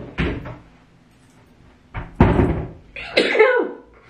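A woman sneezing several times in sudden bursts, the loudest about two seconds in.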